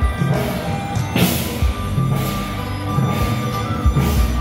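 Procession percussion: hand-held drums and cymbals playing together, with a loud cymbal crash about a second in.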